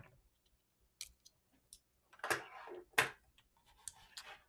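A few separate clicks and taps from a computer keyboard and mouse as a value is entered, the loudest about three seconds in.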